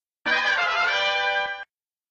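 Short musical jingle of a channel logo transition, about a second and a half long, with a moment of silence before and after.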